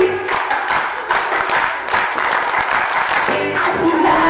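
A crowd clapping over music, in a break between sung lines.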